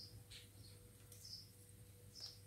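Near silence: room tone with a low steady hum and a few faint, short, high bird chirps.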